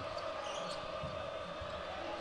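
A basketball bouncing on a hardwood court, a few faint knocks over the steady murmur of an arena crowd.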